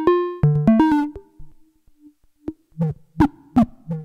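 Moog Labyrinth synthesizer playing a stepped sequence of short, buzzy notes while its filter cutoff is modulated by the LFO. Bright notes run for about the first second, then the sound nearly drops out to faint blips. Clipped notes return about three seconds in, some bright and some muffled as the filter opens and closes.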